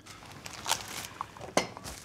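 Plastic cling film being pulled from the roll and handled, crinkling, with two sharper crackles about a second apart.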